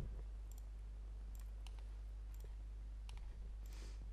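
A few sparse, light clicks from a laptop being operated, over a steady low hum.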